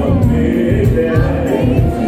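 Loud live R&B band music through a PA, many voices singing together over a steady bass pulse.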